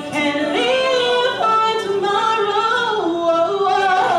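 A woman singing solo into a handheld microphone, holding long notes that slide up and down in pitch.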